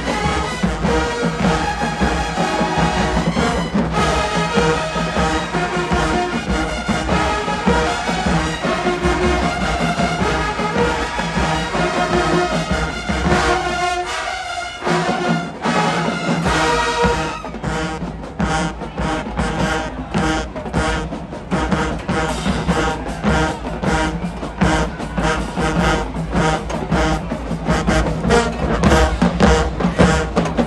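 A large marching band playing in the stands, brass and sousaphones over a steady drum beat. About halfway through the low end briefly drops away, then the drums come back in with sharp, evenly spaced hits under the horns.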